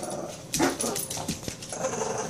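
A Brittany spaniel and a pug playing tug of war over a toy: short play growls and whines in quick, uneven bursts, starting about half a second in.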